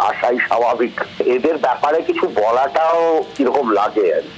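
Speech only: a person talking without pause, with one long, drawn-out wavering vowel about three seconds in.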